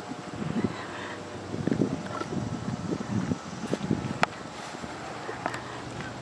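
Outdoor background with wind noise on the microphone and a few faint sharp clicks about four and five and a half seconds in.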